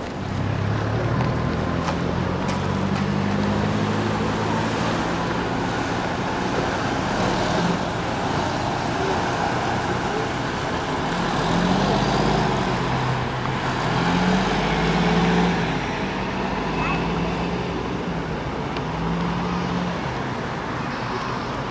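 City street traffic: a steady noise of passing vehicles, swelling about halfway through as a large coach bus drives by, with low voices talking in the background.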